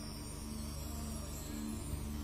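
Soft background music of sustained low chords that change about every second, between sung lines of a hymn.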